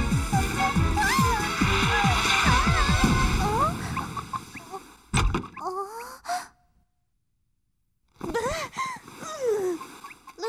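Cartoon background music with a sliding melody over low beats, fading out about four seconds in; a single thump follows about a second later, then, after a short silence, a cartoon character's short wordless vocal sounds near the end.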